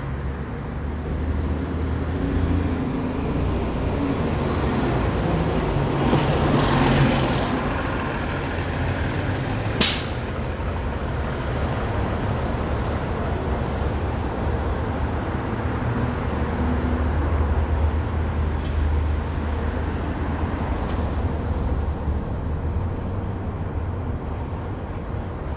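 City street traffic: a steady low engine rumble from passing vehicles, swelling as a vehicle goes by about six seconds in, with one short, sharp hiss about ten seconds in.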